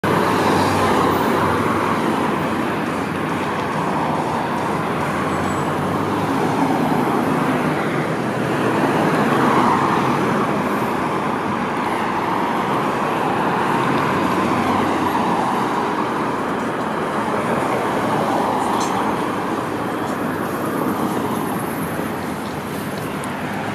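Road traffic on a multi-lane city street: a continuous rush of cars driving past, swelling and easing as vehicles go by.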